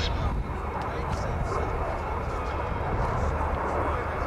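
Jet noise of a Lockheed F-117 Nighthawk's two General Electric F404 turbofans as it makes a display pass: a steady, low rumble.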